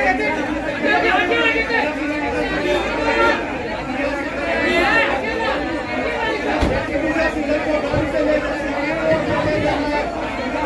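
Several people talking over one another around a vehicle, an unintelligible hubbub of voices, with a single thump about two-thirds of the way through.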